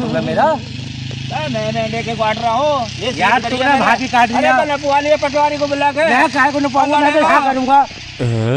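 Men talking heatedly in Hindi, one voice after another with hardly a pause. A steady low drone runs underneath for about the first three seconds.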